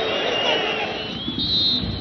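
Stadium crowd noise, then a short blast of the referee's whistle about one and a half seconds in, signalling full time.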